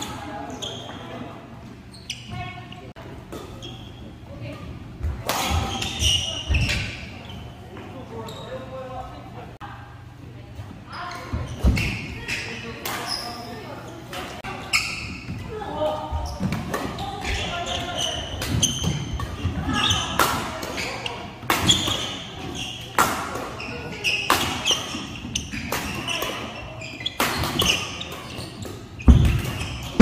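Badminton rackets striking a shuttlecock in fast doubles rallies: sharp, irregular hits with footfalls, ringing in a large reverberant hall.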